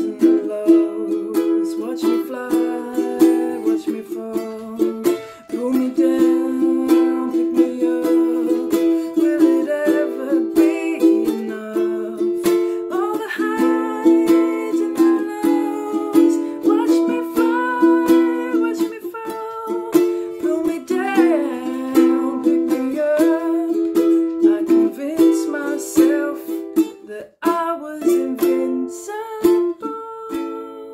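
Solo ukulele playing strummed chords in a steady rhythm, with a short break near the end.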